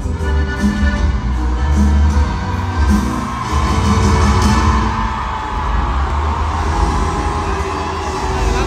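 A live band playing loudly through an arena sound system, recorded from the audience, with heavy pulsing bass. The crowd's voices swell from about halfway through.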